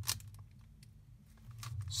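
Plastic Megaminx faces being turned by hand: a sharp click at the start, then a few faint clicks of the pieces, over a low steady hum.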